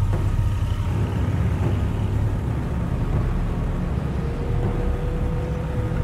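Car driving along a city street: a steady low rumble of engine and road noise.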